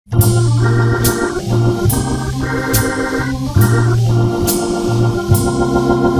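Hammond B3 tonewheel organ playing a slow jazz ballad: sustained chords that change about once a second over low bass notes. A drummer's cymbal strikes about once a second throughout.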